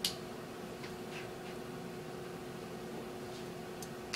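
Instron universal testing machine running steadily with a constant low hum as it slowly loads a steel-reinforced concrete beam in a quasi-static bending test. There is one sharp click right at the start and a couple of faint ticks later.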